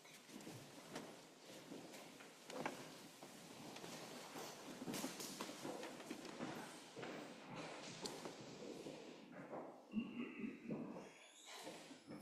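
Faint footsteps and shuffling of a group of people walking down carpeted steps, with scattered light knocks, rustling and low murmured voices.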